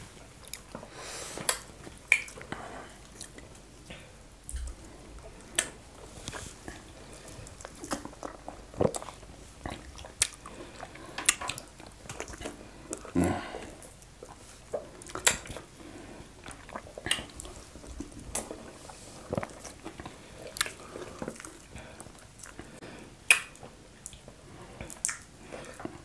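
Close-miked chewing and wet mouth sounds of two people eating fufu with okra soup and fried fish by hand: irregular sticky smacks and clicks, a few each second, with short pauses between.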